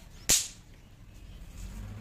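A small firecracker going off once, a single sharp crack about a third of a second in that dies away quickly.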